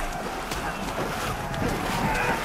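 Battle-scene film soundtrack played back from a screen: a steady rushing noise with faint voices mixed in.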